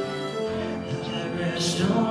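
Live church praise band playing a slow worship song, with long held notes and chords.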